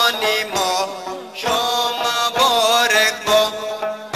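Wakhi mubarakbad devotional song: a voice singing a wavering, ornamented melody with music accompanying it, with a brief drop in loudness between phrases a little past one second in.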